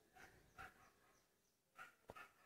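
Near silence, broken only by two faint, brief sounds, one about half a second in and one near the end.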